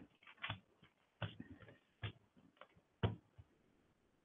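A run of irregular small clicks and taps, about eight in all, with the loudest one about three seconds in, such as desk or keyboard handling picked up by a headset microphone over a video call.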